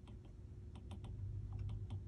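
Stylus tip tapping and clicking on a tablet's glass screen during handwriting: faint, irregular ticks, several a second, over a low steady hum.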